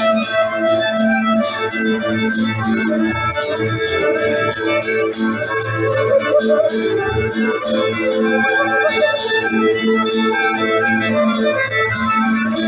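Live acoustic folk band playing: held keyboard chords, a strummed acoustic guitar keeping a steady rhythm, and a fiddle.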